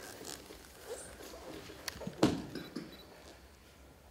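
Barefoot dancers rolling and sliding over each other on a stage floor: soft rubs, small clicks and squeaks of skin and clothing on the floor, with one louder, sharper squeak a little over two seconds in.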